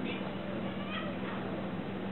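A cat giving two short, high-pitched mews while play-fighting, one at the start and one about a second in, over a steady low hum.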